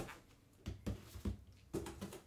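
A few soft low knocks and thumps of a cardboard box being handled and set down on a table, starting a little under a second in.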